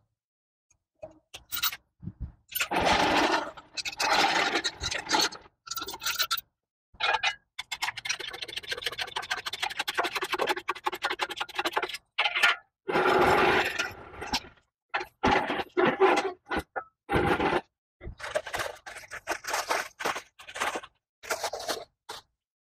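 A steel engine hoist being worked to lift a plastic-wrapped 5.4L engine block out of a truck bed. It sounds as irregular scraping, rattling and clicking in stop-start bits with short quiet gaps, including a stretch of rapid clicks in the middle.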